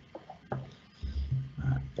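A man's quiet, low voice over a video-call microphone: a short word, then a drawn-out low murmur in the pause.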